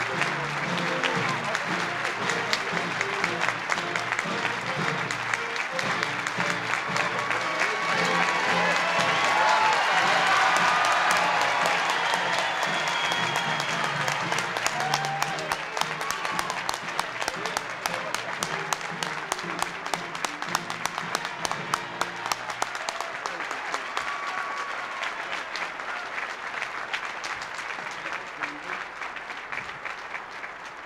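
A banquet-hall audience applauding over music. The applause swells to its loudest about a third of the way in. The music stops about two-thirds of the way through, and the clapping thins and dies down near the end.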